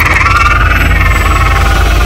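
Trailer sound design: a loud, steady low rumble with a sustained, slightly wavering mid-pitched drone above it, following a sharp hit just before.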